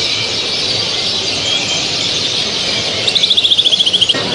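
Many caged canaries and finches singing at once, a dense high twittering chorus. Near the end one bird gives a fast trill that falls slightly in pitch.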